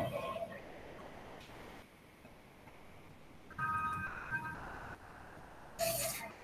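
Quiet room tone with, a little past halfway, about a second of steady electronic tones, a phone-style ring or notification chime.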